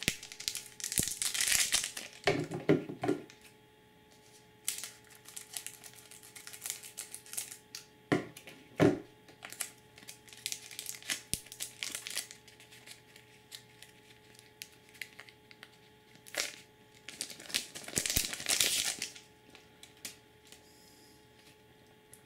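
Foil booster pack wrapper of Magic: The Gathering cards crinkling as it is handled and opened by hand, in irregular bursts with quieter gaps between them.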